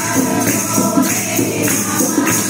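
A group of women singing a devotional Hindu chant together, a repeated bhajan line, with jingling hand percussion keeping a steady beat.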